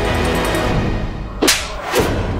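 Dramatic background music, cut by a sharp whip-like swish sound effect about one and a half seconds in, followed by a shorter hit near the end.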